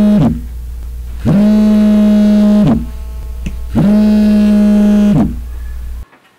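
Mobile phone buzzing on a bedside table, an incoming call: three long buzzes of about a second and a half each, about a second apart, each sliding up in pitch as it starts and down as it stops. A steady low hum runs beneath and cuts off suddenly at the end.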